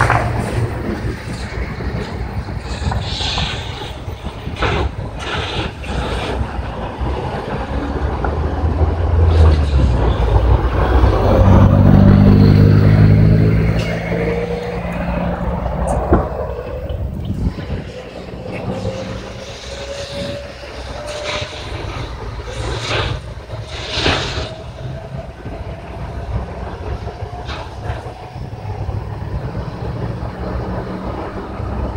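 Vehicle engine running, with a low drone that swells and grows loudest between about ten and fourteen seconds in, then a slowly rising tone. Scattered short sharp knocks or pops run through it.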